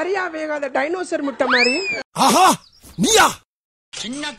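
Children's voices: talking at first, then a squeal that rises and falls near the middle, followed by two short, loud arching cries about a second apart.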